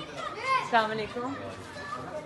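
Indistinct voices of several people chattering, a raised voice peaking about half a second to a second in.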